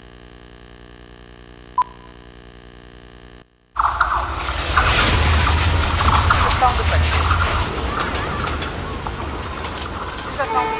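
Steady electrical hum from the hall's playback system with a single click, then a film sound-effects track played over the speakers cuts in about three and a half seconds in. It is a dense, loud location recording of a crowded street, many voices over traffic noise.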